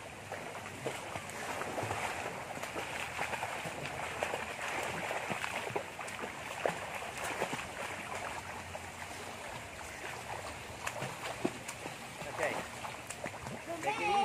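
Swimmers splashing in pool water, kicking and paddling, with a steady wash of churned water and many small slaps and drips.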